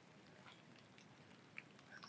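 Near silence: faint background hiss with a tiny tick near the end.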